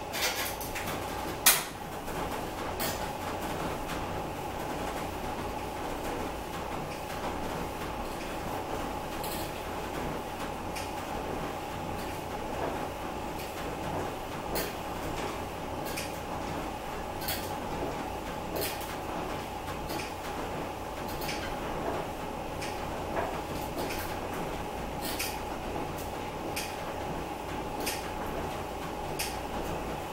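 Elliptical trainer in use, its pedals and linkage clicking and creaking once per stride, about every second and a third, over a steady hum. A louder knock comes about a second and a half in.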